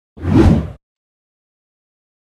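A single whoosh sound effect marking an edit transition, swelling and fading within about half a second.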